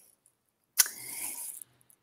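Silence, broken about a second in by a soft, short mouth noise and intake of breath lasting under a second, as a person draws breath before speaking.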